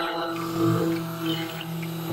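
Handheld stick blender running in a tub of liquid soap batter, a steady humming drone.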